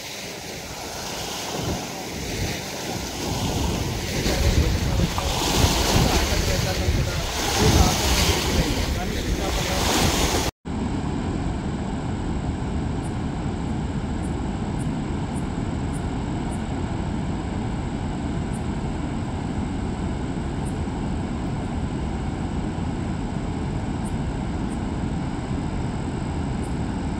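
Wind buffeting the microphone over choppy reservoir water, swelling in gusts for about ten seconds. After an abrupt cut comes a steady, unchanging rush of floodwater pouring through the open spillway gates of the Nagarjuna Sagar dam.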